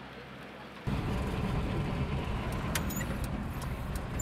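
Minibus engine running under way, heard loud from inside the cab, with light clicks and rattles over it. A quieter hum steps up suddenly to the full engine sound about a second in.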